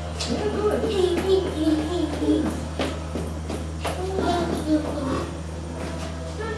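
Indistinct children's voices talking over a steady low hum, with a few sharp clicks.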